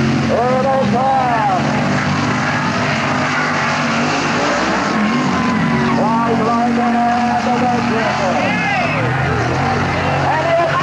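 Big-block Ford V8 engines of 4x4 mud-racing trucks running on a dirt track, a steady drone, with voices over it near the start and again from about six seconds in.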